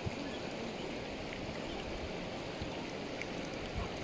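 Steady rushing noise of the flooded river's water flowing past, with a few faint low knocks.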